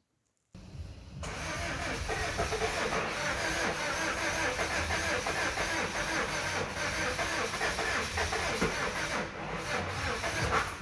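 Mazda 2.2 Skyactiv-D diesel engine cranking on its starter motor without firing. The cranking starts about half a second in, runs fast and even with no compression beats, dips briefly near the end and picks up again: it sounds as if the engine has no compression.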